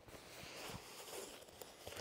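Faint rustling and a few soft taps from a padded fabric carry bag being handled.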